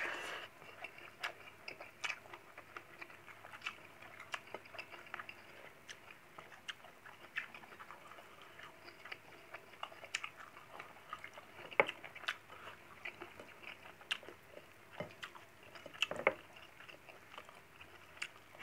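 Close-up chewing and small wet mouth clicks of a person eating rice by hand, in short irregular ticks, with a few louder clicks in the second half.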